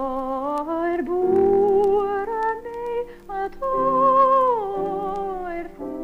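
A woman singing a slow air in a high register with strong vibrato, holding long notes, with a brief break about three and a half seconds in, over sustained accompaniment chords.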